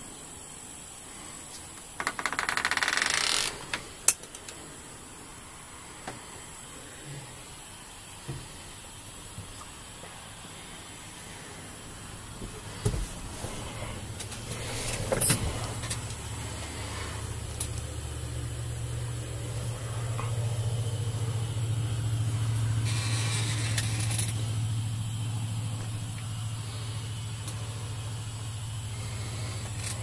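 Heavy truck's diesel engine idling, heard from inside the cab as a low steady hum that comes in about twelve seconds in and grows louder, with a few light clicks. Near the start a loud rushing noise lasts about a second and a half, and a fainter one comes later.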